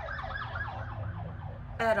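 An emergency-vehicle siren in a fast yelp: rapid falling sweeps, about six a second, heard in the background and stopping shortly before the end.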